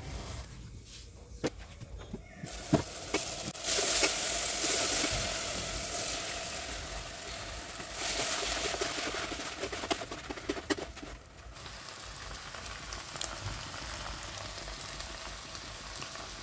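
Cooked beans frying with onion and tomato in a stainless steel pot, a steady sizzle that gets louder about four seconds in and fades after about eleven seconds. A few sharp clicks of a wooden spoon stirring against the pot.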